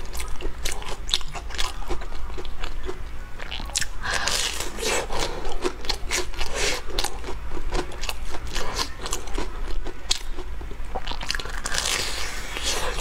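Close-miked crunching and chewing of a breadcrumb-coated deep-fried snack on a stick: a dense, continuous run of crisp crackles, with a fresh bite into the crust near the end.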